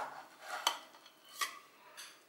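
Metal serving spatula clinking and scraping against a metal baking tray and a ceramic plate as a slice of lasagna is cut and lifted out, with two sharp clinks a little under a second apart.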